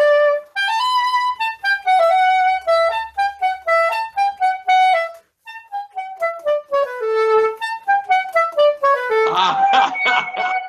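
Soprano saxophone playing an unaccompanied melody one note at a time, with a short breath pause about five seconds in. Near the end a brief burst of noise overlaps the notes.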